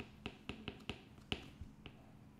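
Stylus tip tapping on a tablet screen while handwriting: a faint, irregular series of about eight short clicks, the sharpest a little past the middle.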